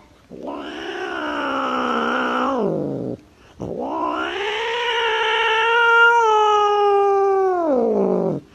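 Two long, drawn-out cat-like yowls. The first lasts about three seconds and slides down in pitch at its end; the second, longer one rises, holds a steady pitch, then slides down near the end.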